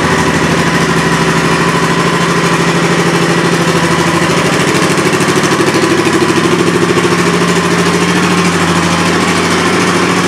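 A 2007 Honda Shadow Sabre's 1,100 cc V-twin idling steadily with an even, rapid exhaust pulse.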